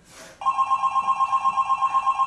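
Telephone ringing: a two-tone trilling ring, pulsing about ten times a second, that starts about half a second in.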